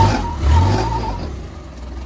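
A utility vehicle's engine revved twice in quick succession, its pitch rising each time, then easing back to a steady lower running sound.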